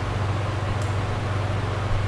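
Steady low hum with an even hiss of background noise, and one short click a little under a second in.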